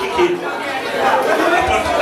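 Many people talking at once in a crowded room: a steady wash of loud crowd chatter.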